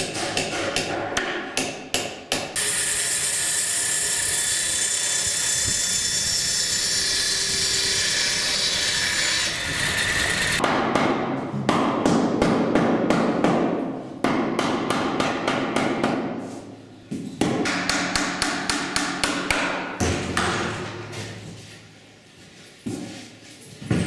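Rapid hammer blows on a timber window frame, then a power tool running steadily for about eight seconds, then more bursts of rapid hammering.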